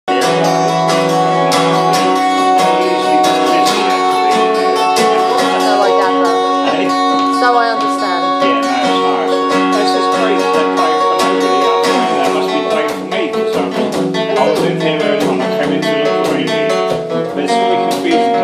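Acoustic guitar strummed in a steady rhythm, its chords ringing.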